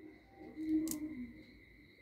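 Beads of a soroban-style abacus being pushed along their rods by hand, with one sharp click a little under a second in, under a faint low hum.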